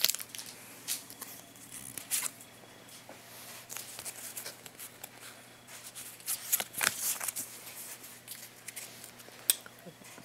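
Pokémon trading cards from a freshly opened booster pack being handled and sorted by hand: scattered short rustles and clicks of card stock, over a faint steady low hum.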